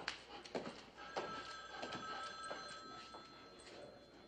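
A telephone bell rings in the background for about two and a half seconds, starting about a second in, over a few footsteps on a hard floor spaced about 0.6 s apart.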